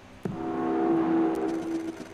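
Sound from an anime trailer's soundtrack: a sustained, steady-pitched drone of several tones. It starts suddenly about a quarter second in, swells to a peak, then fades and stops just before the end.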